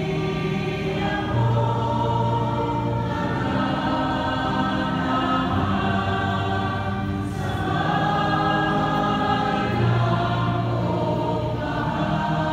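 A psalm sung slowly in church, a voice through the microphone together with choir singing, in long held notes that change every couple of seconds.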